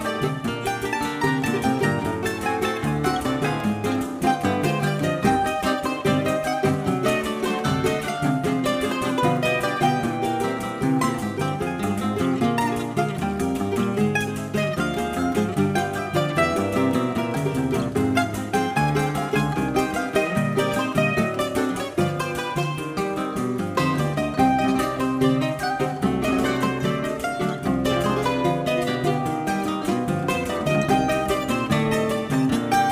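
A choro ensemble playing live: a bandolim (Brazilian mandolin) carrying the melody over strummed and picked acoustic guitars and a pandeiro, in a steady, busy choro rhythm.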